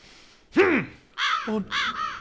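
Loud, harsh repeated cries: one sharp cry falling in pitch about half a second in, then harsh calls about two a second from just after the first second.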